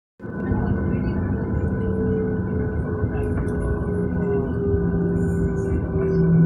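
An airliner's jet engines running at taxi power, heard inside the cabin: a steady rumble with several held humming tones, the lower ones dipping slightly in pitch about two-thirds of the way in.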